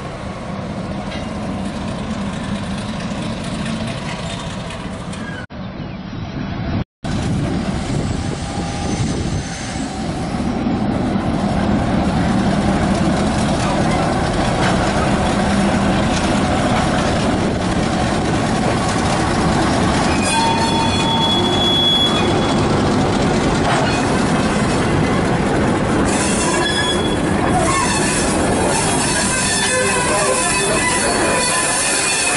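Y-class diesel-electric locomotive Y127 running past at low speed with its engine working, followed by its wagons and carriage rolling by on jointed track. High wheel squeals sound in the later part as the carriages pass. The sound cuts out briefly about seven seconds in.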